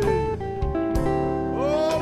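Blues song with an electric guitar playing along over the band's bass and drums, with a bent guitar note rising near the end.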